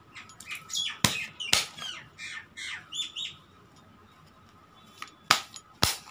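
Birds calling: a run of quick, falling, squawky chirps through the first three seconds. Near the end come two sharp taps, tarot cards being put down on a cloth-covered table.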